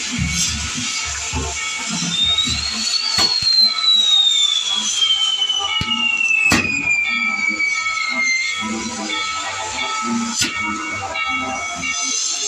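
A burning fireworks tower with a steady hiss of fountains and sparks. One long whistling firework rises briefly, then slides down in pitch for about six seconds. Sharp bangs come about three, six and a half, and ten seconds in, with music underneath.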